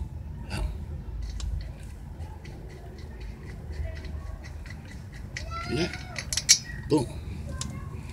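A front brake caliper's lower bolt on a 2013 Honda Accord being loosened with a ratchet and then spun out by hand, giving a run of faint, rapid light ticks, about five a second, that stops about two thirds of the way in.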